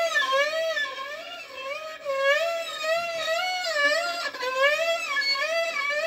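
A violin sustaining one note, bowed, with a slow, wide vibrato: the pitch swings up and down about twice a second as a practice exercise. There are two brief breaks in the tone, at about two seconds in and again just past four seconds.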